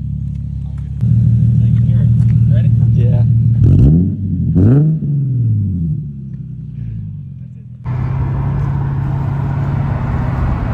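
Infiniti G37 sedan's 3.7-litre V6 idling through an ISR single-exit exhaust with resonator, stock cats and Y-pipe, heard at the tailpipe. Two quick revs come about four and five seconds in, each falling back to idle. About eight seconds in it cuts to steady engine and road noise heard inside the moving car.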